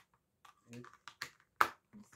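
Plastic felt-tip markers clicking as they are pushed back into the slots of a plastic marker case: a few sharp clicks, the loudest a little after one and a half seconds in.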